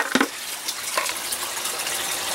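Steady rush of running water from the aquaponic setup, with a couple of light knocks as a plastic coffee can is handled.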